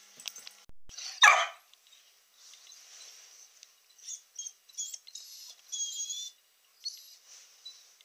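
A five-month-old puppy barks once, sharply, about a second in, then whines in several short high-pitched calls around the middle, as a dog does when it is asking for something.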